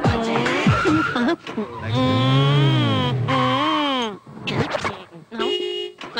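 Men's voices in a film soundtrack: a long, drawn-out vocal cry lasting over a second whose pitch rises and then falls, then a shorter gliding one. A short steady note sounds near the end.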